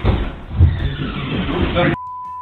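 Indistinct voices and commotion from men storming a room, with a heavy thump just after half a second in.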